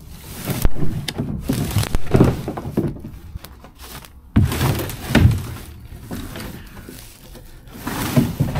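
Footsteps crunching and brushing through dry undergrowth and brambles, with irregular snaps and thuds. The sharpest comes about halfway through.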